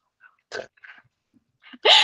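Near silence broken by two short, faint breathy puffs, a person breathing out or laughing softly under the breath, then speech begins just before the end.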